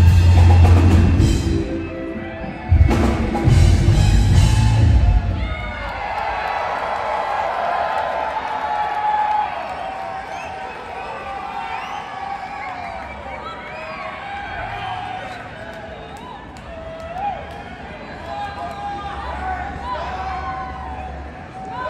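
A live band playing loudly with a heavy drum beat, cutting off about five seconds in. Crowd voices take over for the rest.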